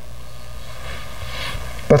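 Steady low hum of room and background noise during a pause in a man's speech, with a brief swell of hiss late on. A man's voice starts speaking at the very end.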